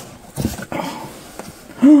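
Soft rustling of a fleece blanket and cardboard box as hands pull the blanket back, with a stronger rustle about half a second in. A woman's short exclamation "Oh" comes near the end and is the loudest sound.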